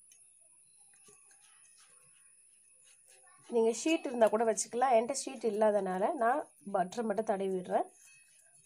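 Near silence for about three and a half seconds, then a person's voice in phrases to the end.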